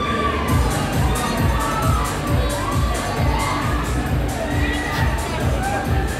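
Riders screaming and shouting on a fast-spinning fairground ride, over loud dance music with a steady beat about twice a second.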